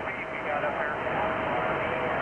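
Radio receiver audio between transmissions: steady band noise with a faint, garbled voice from a weak station underneath and a thin steady whistle, heard through the transceiver's speaker.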